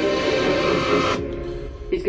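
Film trailer music: a sustained, dense chord whose high end cuts off abruptly about a second in, the rest fading away.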